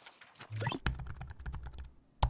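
Computer keyboard typing sound effect: a quick, irregular run of key clicks with low thuds, starting about half a second in and stopping just before the end.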